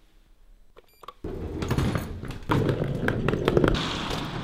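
A short electronic chime about a second in, typical of an elevator arriving. Right after it, a sudden loud stretch of noise with scattered clicks and knocks as the elevator doors slide open.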